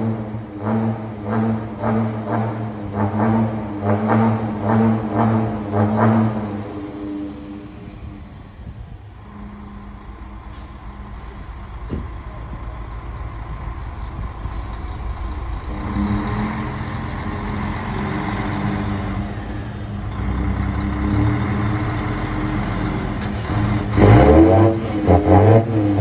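Mercedes-Benz Axor 1840 truck's straight-six diesel revved in quick repeated blips through a button-operated loud exhaust, each blip a short surge. It drops back to a lower, steadier running sound midway, then rises in pitch about 24 seconds in and is blipped again near the end.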